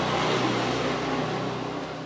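Rushing noise of a passing vehicle, loudest at the start and fading steadily toward the end.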